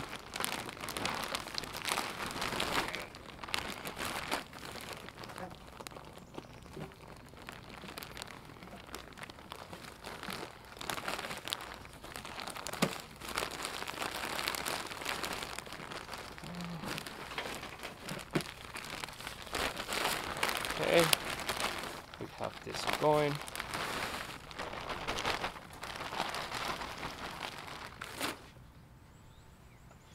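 Plastic bag of raised-bed soil mix crinkling and rustling as it is shaken out and handled, with irregular crackles, easing off near the end.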